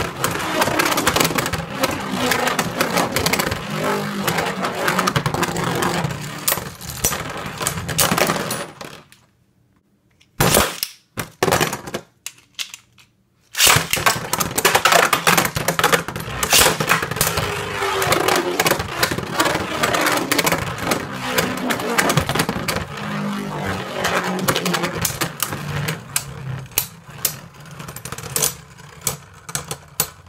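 Two Beyblade Burst Turbo tops, Roktavor R4 and Thorns-X Minoboros M4, spinning and clashing in a plastic Rail Rush Beystadium: a dense, fast rattle and clatter of plastic on plastic. The clatter stops about nine seconds in. A few sharp knocks follow, then the clatter starts again about fourteen seconds in and dies away near the end as a battle finishes.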